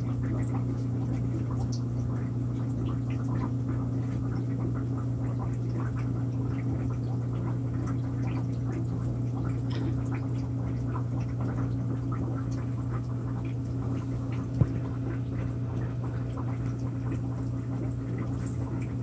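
Aquarium equipment running: a steady low hum with faint bubbling and trickling water throughout, and one sharper click about three-quarters of the way through.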